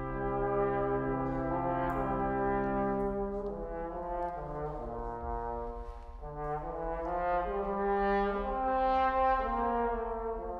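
Brass quintet of two trumpets, French horn, trombone and tuba playing slow, sustained chords that change every second or two, with a long low tuba note under the first few seconds. The first trumpet rests partway through while the other four play on.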